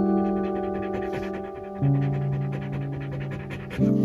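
A dog's quick, steady panting, mouth open, under background music of soft sustained chords that change about every two seconds.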